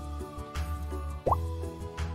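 Background music, with a short rising pop sound effect about a second and a quarter in.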